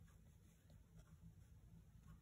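Near silence: faint room tone with a few soft touches of a watercolour brush on the palette or paper, one tick about a second in.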